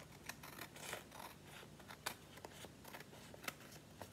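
Scissors snipping through scrapbook paper: a run of faint, uneven snips trimming a thin overhanging strip off the edge.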